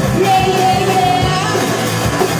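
Live rock band playing loud: drum kit, distorted electric guitars and bass, with a voice singing over it and a note held through the middle.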